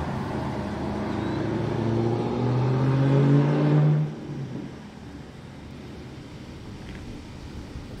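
A road vehicle's engine accelerating past, its pitch rising steadily for about four seconds before it cuts away, leaving quieter steady street noise.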